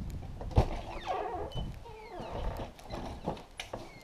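A door opening onto a wooden deck: a sharp click about half a second in, then a creaking squeal, then a few footsteps on the deck boards near the end.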